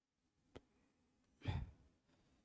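A faint click, then a short sigh, a breath out that hits the headset microphone, about a second and a half in.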